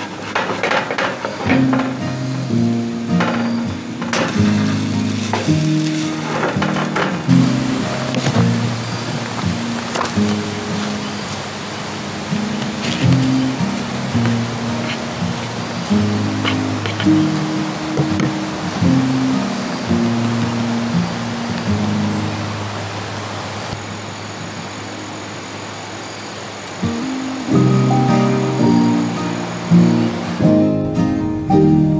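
Background music: an instrumental tune of stepped, held low notes.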